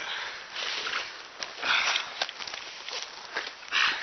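A person scrambling up a steep grassy bank by hand: rustling grass and plants with huffing breaths, in three loud noisy bursts near the start, partway through and just before the end, with scattered small snaps and crackles between.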